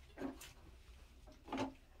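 Quiet handling sounds as a plastic bedpan is picked up beside a bed: two brief soft knocks about a second apart.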